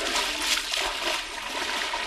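Water rushing and splashing in a steady noisy wash.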